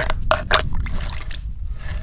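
An argillite stone ground against a wet sandstone slab: a few short scraping strokes in the first second, rounding the stone's edge.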